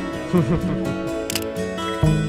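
Soft background music with plucked guitar, and a camera shutter click, a quick double snap, about one and a half seconds in.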